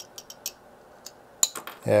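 Light metallic clicks and taps of a torque wrench and an SMA connector that has just snapped off a circuit board, handled at a bench vise: a few ticks in the first half-second, then a quick cluster of clicks about one and a half seconds in.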